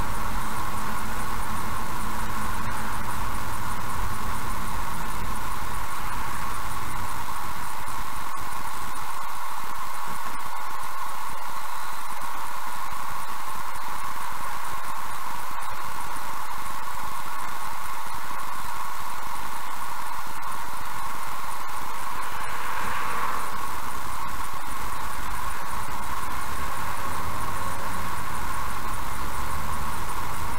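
Car recorded from inside by a dashcam: low road and engine rumble fades away as the car slows to a stop and comes back as it pulls away again, under a steady hiss that runs throughout.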